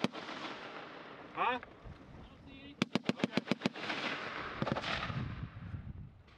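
A belt-fed machine gun firing one short burst of about seven rounds in under a second, about three seconds in. The shots are followed by a rolling echo and noisy crackle.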